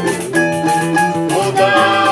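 Brazilian choro-samba ensemble playing: acoustic guitar and cavaquinho strumming under a flute, with a pandeiro keeping an even jingling rhythm. A long held note comes in past the middle.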